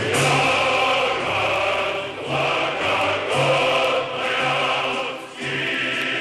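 A choir singing a slow song in several phrases, with short breaks between them.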